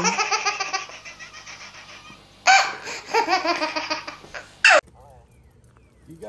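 Baby laughing hard in quick repeated bursts: one long fit of giggling, a short pause about two seconds in, then a second fit that ends about five seconds in.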